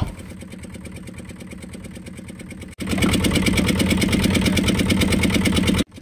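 Fishing boat's engine running steadily with a fast, even pulse. About halfway through it abruptly becomes much louder and closer.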